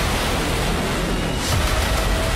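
Missile launch: a rocket motor's loud, steady rush of noise, with a sharper burst about one and a half seconds in.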